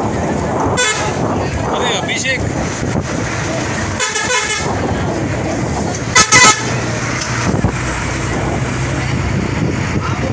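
Vehicle horn tooting in short blasts: one about four seconds in, and a loud double toot a little after six seconds. Underneath runs the steady road noise of a moving vehicle.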